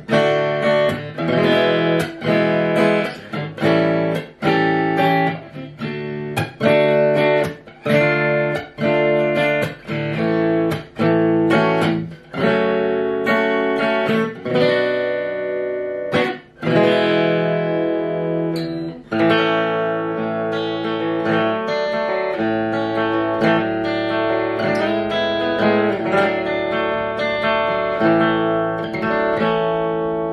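Washburn Festival EA20 electro-acoustic guitar played plugged in through a small Blackstar amplifier. Choppy strummed chords with short stops for about the first half, then more continuous ringing picked notes.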